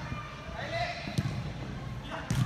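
A soccer ball kicked once on indoor turf, a single sharp thud a little past a second in, with players' voices calling faintly in the hall.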